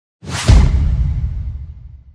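Logo-intro sound effect: a whoosh that sweeps into a hit about half a second in, followed by a deep boom that fades away over the next two seconds.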